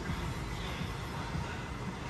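Quiet background music over a steady low rumble of outdoor noise, with no distinct events.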